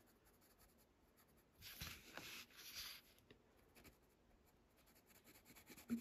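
Water-soluble graphite pencil (Sketch & Wash) shading on a paper tile: a few faint scratchy strokes between about one and a half and three seconds in, otherwise near silence.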